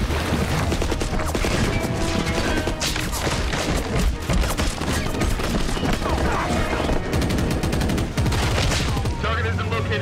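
Film soundtrack of rapid automatic gunfire in long bursts, many shots a second, over a low rumble and background score music.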